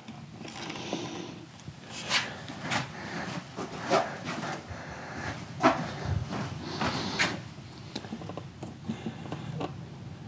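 Handling noise: a series of sharp clicks and knocks, about five in all, over a low rustle, with a dull thump about six seconds in.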